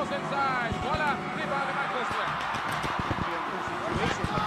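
Live basketball game sound in an arena: short high squeaks, strongest in the first second, and the thuds of the ball bouncing on the court, over the steady din of a large crowd.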